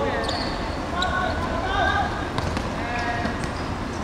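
Football players shouting calls to each other on the pitch, with a few sharp thuds of the ball being kicked.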